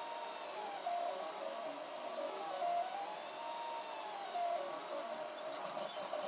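3D printer's stepper motors whining while it prints, the pitch sliding up and down in smooth arcs as the print head moves.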